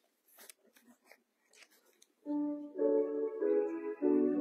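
Faint rustling and small knocks, then about two seconds in a keyboard starts playing sustained chords.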